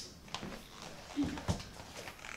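Quiet room with a few soft knocks and clicks from people stepping and handling books, and a brief murmur of a voice about a second in.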